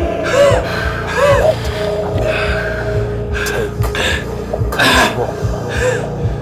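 A man gasping and groaning in distress, with a sharp breath about every second, over a low droning film score.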